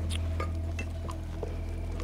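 A few light, scattered clinks of tableware (cups, dishes or cutlery) over a steady low hum.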